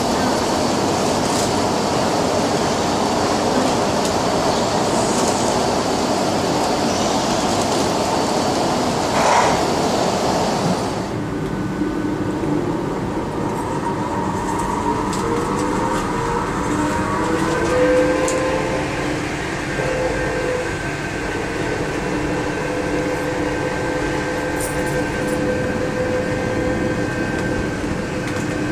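Von Roll MkIII monorail train heard from inside the car. A dense rushing noise for the first ten seconds or so drops away sharply. Then the drive's whine rises in pitch as the train gathers speed and settles into a steady hum of several tones.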